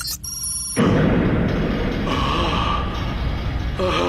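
Cartoon sound effect of massive temple doors grinding open: a short high chime, then a loud, steady rumble that starts suddenly about a second in and runs on, with dramatic music.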